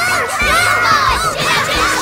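A flock of cartoon berry birds chattering: many quick chirps, each rising and falling in pitch, overlapping in a continuous dense swarm.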